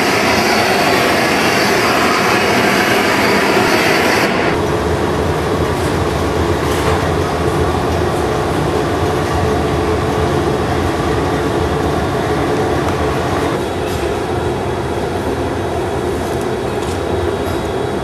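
Steady roar of a glass hot shop's furnace and glory hole burners. A loud hiss sits over it for about the first four seconds, then cuts off suddenly.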